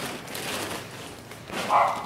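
Plastic bags rustling and crinkling as a small zip-lock bag is pulled out of a plastic-wrapped package, with a brief louder sound near the end.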